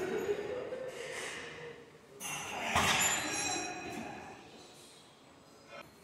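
A man's heavy, forceful breaths and exhales as he strains through the last hard reps of a set on a preacher-curl machine, with a short click near the end.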